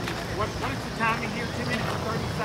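Voices talking in the background, several short bursts of indistinct speech, over a steady low rumble.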